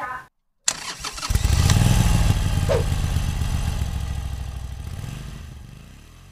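Motorcycle engine sound effect: a sudden start about half a second in, then the engine running strongly and fading out slowly over the last few seconds.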